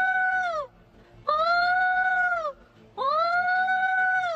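A woman's voice making long, steady high-pitched tones, three in all, each about a second and a half, sliding up at the start and falling away at the end: vocal sonar calls, whose echoes off the child in front of her are used to tell the child's costume by ear.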